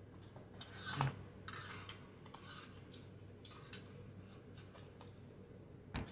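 Faint, close-miked mouth clicks and smacks of someone chewing fried food, with one louder click about a second in.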